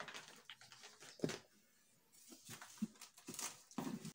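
Faint rustling and a few light knocks of a packet of tea leaves being handled and set down on a kitchen counter, with a brief low sound near three seconds in.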